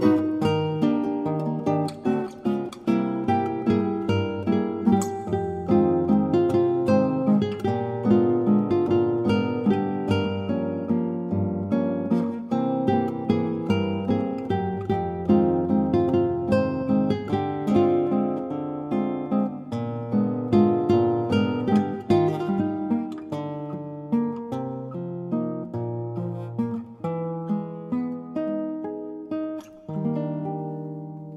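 Nylon-string classical guitar playing a chordal accompaniment, plucked chords over a moving bass line. A final chord is struck at the very end and left to ring.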